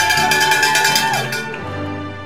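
Cheering for a graduate: a long, high-pitched held call over rapid, even clanging, like a shaken cowbell. It all stops about a second and a half in, leaving background music.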